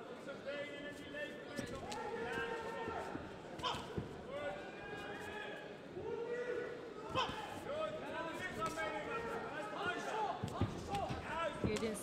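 Kicks and punches landing in a kickboxing fight: scattered sharp thuds at irregular intervals. Under them, shouting voices from the arena run on throughout.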